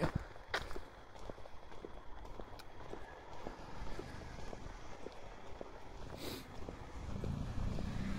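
Footsteps of a person walking, heard as faint irregular ticks, with a low rumble building near the end.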